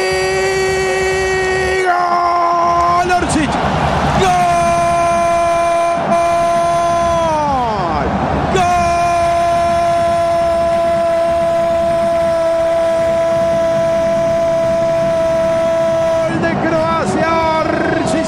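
A radio football commentator's long drawn-out goal cry, sung out on held notes with a short break for breath, the pitch dipping and coming back up about eight seconds in, then held steady for some eight seconds more. It marks a goal just scored.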